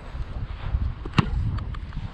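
Wind rumbling on the microphone, with one sharp pop a little over a second in: a football being punted.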